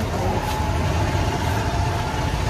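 Road traffic from the street: a vehicle engine running, heavy low rumble with a steady high tone held over it.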